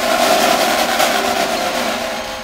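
Snare drums playing a fast, sustained roll.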